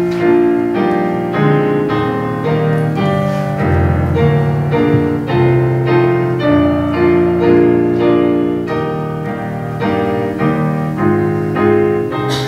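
Piano playing a hymn tune in full chords at a steady pace.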